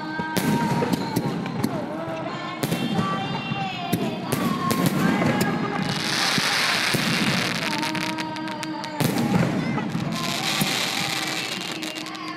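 Fireworks going off: a string of sharp bangs from bursting aerial shells, with two dense stretches of crackling about six and ten seconds in.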